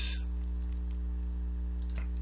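Steady low electrical hum in the recording, with a faint click or two near the end.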